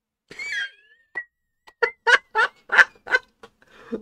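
A short burst of laughter: a brief warbling vocal sound, then a quick run of about six short 'ha-ha' pulses.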